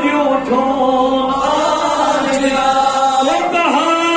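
A man's voice chanting a religious verse in long, held melodic lines into a microphone, the pitch dipping and rising again near the end.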